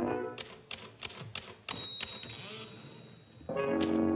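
Typewriter keys struck as percussion in an orchestral film score: a run of sharp, irregular clacks in a gap between orchestral phrases, with a thin high steady tone held over the second half. The orchestra comes back in with a sustained chord near the end.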